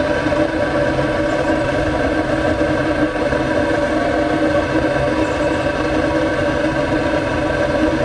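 A burner rig running, its hot exhaust flowing out of the open end of a long metal pipe as a loud, steady, engine-like drone that holds one pitch with several steady overtones.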